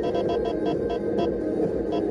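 Electronic warning beeps from a speed-camera alert device, pulsing rapidly about six or seven times a second and stopping a little over a second in, over steady road and engine noise inside the car.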